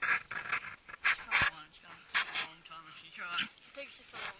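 A dog breathing hard and sniffing with its head down a rabbit burrow, in short noisy bursts about a second apart.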